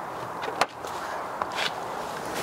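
A person climbing into a car's driver's seat: a few faint scuffs and clicks of footsteps and body contact with the seat and door frame, over a low steady outdoor background.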